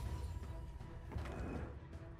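Online slot game soundtrack: quiet background music with faint ticks of symbols dropping into the grid during a free spin.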